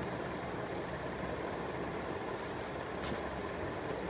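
Steady background rumble and hiss with no clear single source, and a brief soft rustle about three seconds in.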